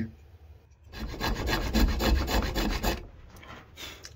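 Quick, rough back-and-forth strokes of a hand abrasive, a file or sandpaper, working a homemade knife. They start about a second in and fade about a second before the end.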